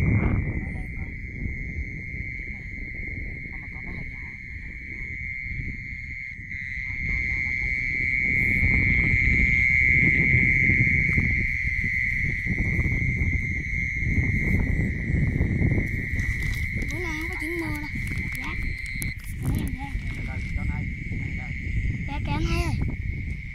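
A steady high-pitched chorus of night-calling animals in the field, holding one unbroken pitch, over a low shifting rumble of noise on the microphone.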